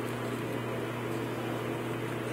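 A steady low hum, like a household appliance or fan running, with no other distinct sounds.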